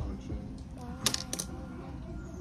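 Low voices in a small room, with a quick cluster of sharp clicks about a second in.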